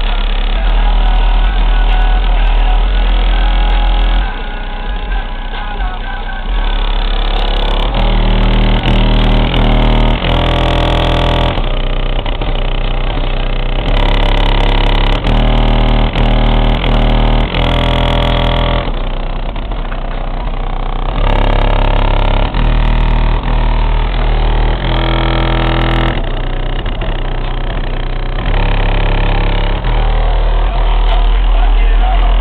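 Music played loud through a car's stereo, carried by a heavy, steady bass from a Re Audio MX 12-inch subwoofer in a 3.3 cubic foot box ported to 36 Hz.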